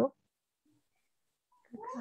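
Speech over a video call with a gap of near silence between two voices: a woman's question trails off at the very start, and another speaker starts answering near the end.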